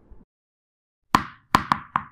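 Four short popping sound effects from an animated intro as cartoon tennis balls pop onto the screen. Each is a sharp hit with a quick ringing fade, and they come in fast succession in the second half after a moment of silence.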